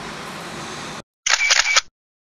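A camera shutter sound, a quick, sharp, high-pitched burst of about half a second, after a steady faint hiss that cuts off about a second in.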